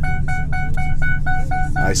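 Rapid electronic beeping, one short pitched tone repeating about four times a second, over the steady low rumble of the 2004 Ford F-150 being driven, heard from inside the cab.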